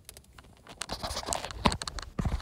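Irregular clicks and knocks starting about a second in, the loudest near the end: handling noise as the recording phone is moved.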